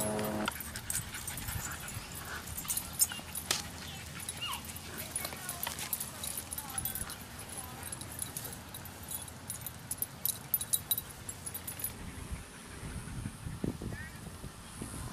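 A small dog making a few short, high whines, among scattered light clicks.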